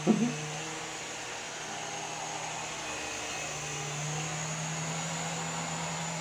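Small indoor RC coaxial helicopter hovering, its electric motors and rotors giving a steady buzzing hum that wavers a little in pitch.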